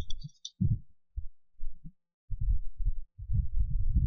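Computer keyboard being typed on, heard as a run of irregular dull thuds with a few sharp key clicks in the first half second.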